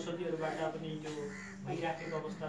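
Speech only: a man's raised voice preaching a sermon, talking without pause.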